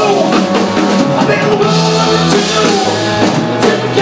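Live rock band playing loudly: distorted electric guitar, bass guitar and drum kit, with a male lead vocal sung by the guitarist.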